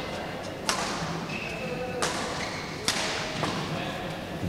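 Badminton shuttlecock struck three times by rackets, sharp cracks about a second apart, each with a short echo in a large sports hall.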